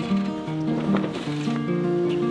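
Acoustic guitar playing a picked pattern of ringing notes, with no singing.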